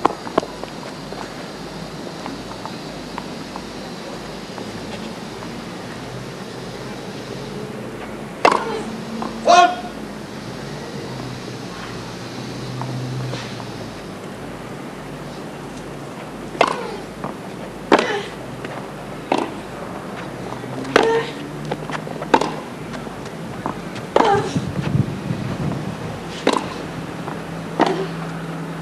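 Tennis rally on a hardcourt: sharp knocks of racket strings hitting the ball, about every second and a half through the second half, after two knocks about a third of the way in.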